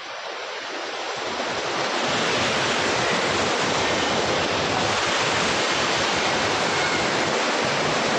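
A small rocky creek rushing, a steady hiss of running water that grows louder over the first two seconds and then holds steady.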